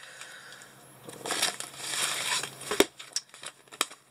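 Plastic packaging crinkling and rustling as the kit's contents are handled, with two sharp clicks in the second half.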